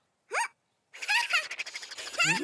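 Cartoon chick's voice: one short squeak rising in pitch about a third of a second in, then from about a second in a run of high chirpy vocal sounds.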